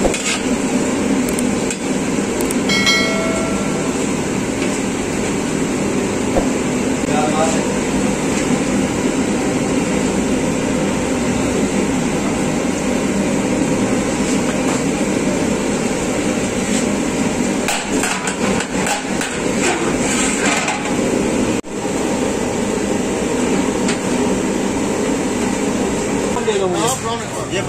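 Steady loud noise of the stove's fire burning under a large aluminium biryani pot. A cluster of light metal clicks comes late on, from the ladle and the pot's lid.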